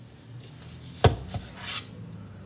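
A canister set down on a tabletop with a sharp knock about a second in, a smaller knock just after, then a brief scraping rustle as its lid is handled.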